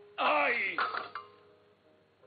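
A loud, wordless human vocal sound that falls steeply in pitch over about half a second, followed by a shorter one just after, over faint background music.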